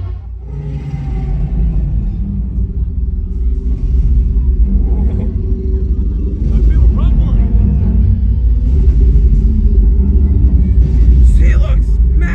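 Deep, steady low rumble of music and sound effects from an arena sound system, with faint voices that grow louder near the end.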